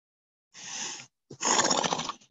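A breath drawn in, then a louder, rough breath blown out close to the microphone.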